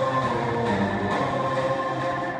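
A held chord of stage music played over the hall's sound system: several steady sustained notes at an even level.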